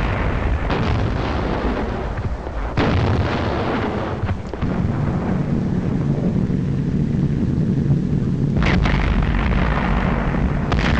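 Artillery shells exploding, with sharp blasts about a second, three seconds and four and a half seconds in. Then a steady drone of piston aircraft engines, broken near the end by another explosion.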